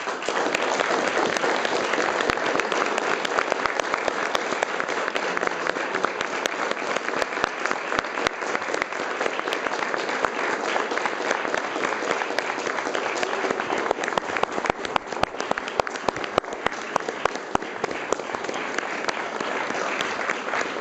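Audience applauding: dense clapping that breaks out right after the piece ends and carries on steadily, with single sharper claps standing out here and there.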